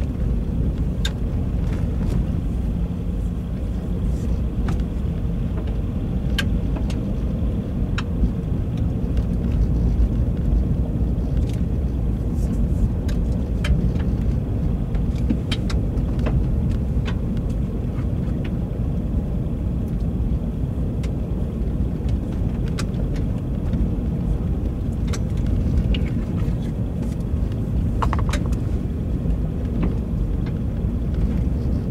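Car driving slowly over a dirt road, heard from inside: a steady low rumble of tyres and road, with scattered sharp ticks and clicks throughout.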